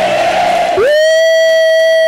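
Crowd shouting and cheering, then a single long whoop of 'woo' into a microphone, which rises in pitch and is held on one steady note for over a second.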